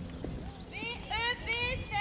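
A horse whinnying: a long, wavering call that begins just under a second in, over the hoofbeats of a horse cantering on sand.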